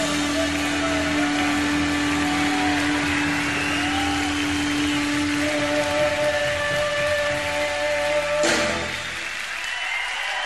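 Live rock band ending a song on sustained, distorted electric guitar: one low note held for about five seconds, then a higher note held over a wash of noise. A final crash comes about eight and a half seconds in, after which it drops to quieter crowd noise.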